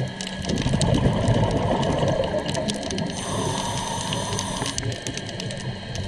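A scuba diver breathing through a regulator, heard underwater: a rush of exhaled bubbles burbling for the first half, then a hissing inhale with a faint whistle. A scatter of small clicks and crackles runs throughout.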